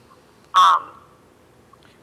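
A single short spoken "um" from a man in a pause of talk; otherwise quiet room tone.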